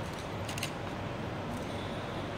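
Steady room ambience of a café with a short cluster of light clicks about half a second in.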